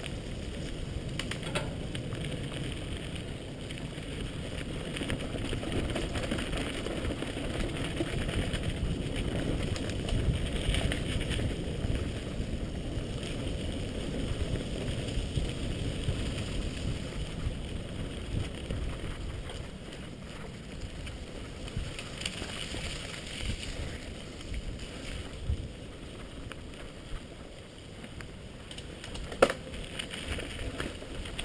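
Mountain bike tyres rumbling over a rough dirt and gravel trail at speed, with the bike rattling over the bumps. There is a sharp knock near the end.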